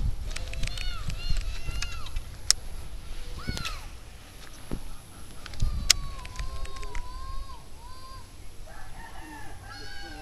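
Chickens calling and a rooster crowing, a series of short arched calls and a longer wavering crow, with a couple of sharp clicks in between.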